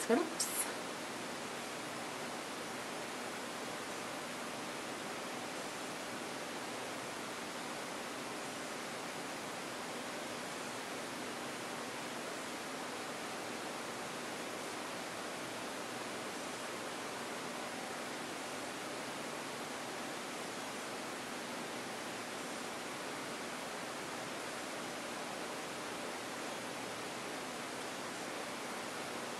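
Steady, even hiss of background noise, the recording's noise floor, with no other sound standing out.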